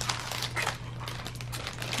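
Plastic packaging crinkling and rustling in quick, irregular crackles as a boxed notebook cooler wrapped in it is handled and lifted out.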